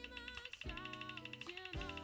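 Spinning web roulette wheel ticking rapidly and evenly as a digital sound effect, over background music with sustained notes.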